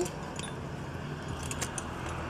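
A few faint metallic clinks from the brass fittings of a steelyard balance, its hanging hooks, rings and counterweight knocking together as it is handled, over a low steady hum.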